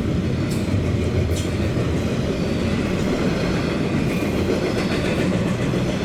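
Double-stack intermodal container train rolling past close by: a steady rumble of steel wheels on the rails, with a couple of faint clacks in the first second and a half.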